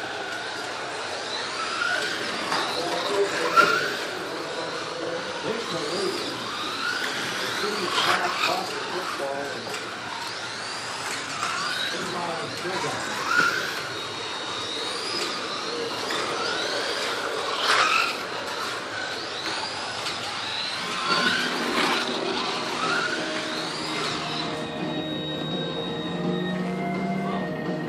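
Slot cars' small electric motors whining, each pass rising and then falling in pitch as the cars speed up down the straights and slow for the corners, again and again, with a few sharp clicks. Music comes in near the end.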